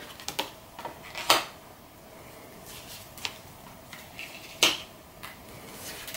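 Tarot cards being drawn from the deck and laid down on a table: a scattered series of sharp clicks and snaps, the loudest about a second in and again near the five-second mark.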